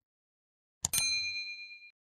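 A short click, then a bright bell ding that rings for about a second and fades: a notification-bell sound effect from a subscribe-button animation.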